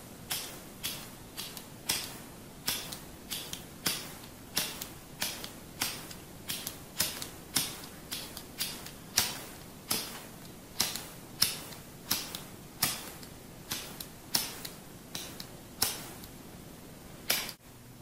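A lighter flicked over and over right at a studio microphone, a sharp click about twice a second.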